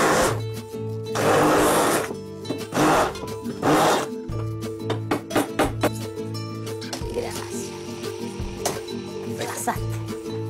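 Hand-held immersion blender (stick blender) pureeing a vegetable mixture in a bowl, run in short bursts: one stopping just after the start, then three more, the last ending about four seconds in. Background music runs under it and carries on alone afterwards.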